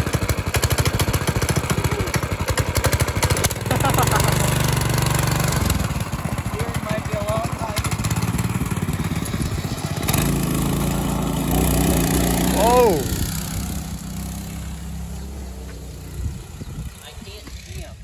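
Go-kart's small gas engine running close by, revving up and down as the kart pulls away, then fading steadily as it drives off near the end.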